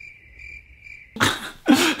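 A steady, thin high tone lasting about a second, like a cricket's chirp. Then come two short, hissing bursts of breath, like a sneeze.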